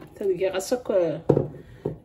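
A voice talking, narrating a recipe.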